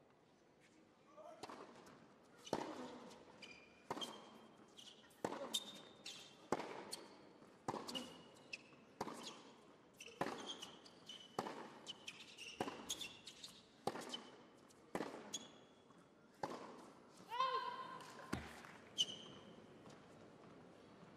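Tennis ball struck back and forth in a long rally on an indoor hard court: a sharp racket hit about every second and a bit, some fifteen in all. Short shoe squeaks come between the hits, with a longer squeal near the end.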